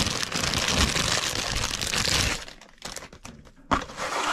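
Clear plastic bag crinkling as a leather knife sheath is pulled out of it: dense crinkling for about two and a half seconds, a short lull with a few small clicks, then another burst near the end.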